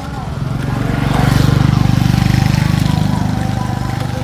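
A small motorcycle engine passing close by: a low, pulsing drone that grows over the first second, is loudest through the middle, and eases off toward the end.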